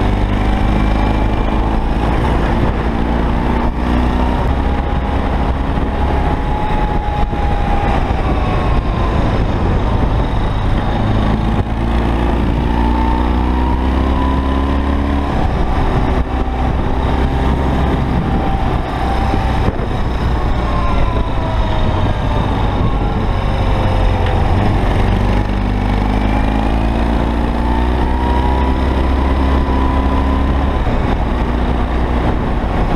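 BMW R80 G/S air-cooled flat-twin (boxer) engine running on the move, heard from the rider's seat, its note rising and falling several times as the rider accelerates and changes gear.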